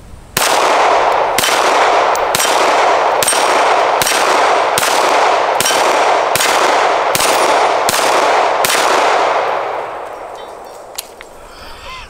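Canik Mete 9mm pistol fired about eleven times at a steady pace, a little under a second between shots. Steel targets ring after each hit, and the ringing fades out after the last shot.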